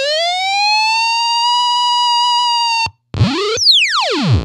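Mantic Flex fuzz pedal making a siren-like "ambulance" tone through a '64 blackface Champ amp. The pitch glides up and holds, cuts off just before three seconds, then rises briefly and dives steeply downward near the end as the pedal's knobs are worked.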